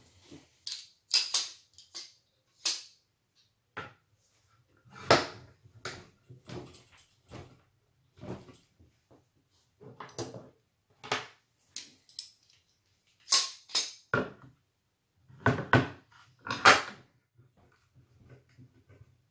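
Woodworking bar clamps being set and tightened on a glued hardboard panel: irregular knocks, clicks and short scrapes of the clamp and wood being handled.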